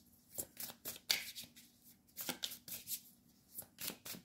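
A deck of tarot cards being shuffled by hand: a quick, irregular run of soft card clicks and slides, coming in clusters with short pauses.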